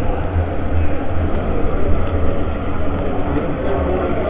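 Storm-driven sea water surging into the street, heard as a steady loud rush with a heavy, uneven low rumble.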